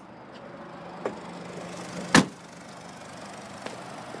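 Rear liftgate of a 2014 Mazda CX-5 being shut, a single sharp thump about halfway through, over a low steady hum.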